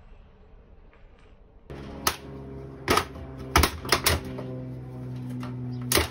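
Sharp blows of a hand tool striking an old Frigidaire refrigerator's cabinet as it is broken apart: about six irregular strikes, starting about two seconds in, over a steady low hum.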